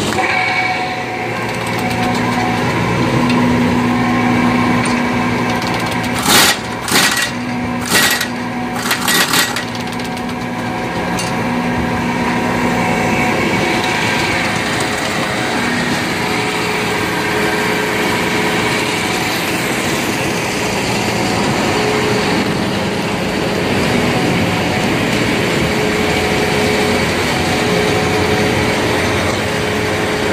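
Industrial electric motor driving a hull conveyor, running with a steady machine hum. A quick series of loud clanks breaks in about six to nine seconds in.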